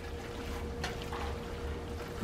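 Silicone spatula stirring sauce-coated pasta and shrimp in a large pot, giving a soft, wet sloshing. A faint steady hum lies under it.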